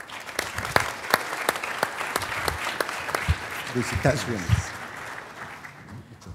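Audience applauding at the close of a talk: dense clapping that tapers off near the end, with a few words spoken under it about two-thirds of the way through.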